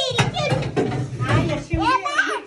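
Overlapping voices of family members and children talking while a young child blows at the candles on a birthday cake.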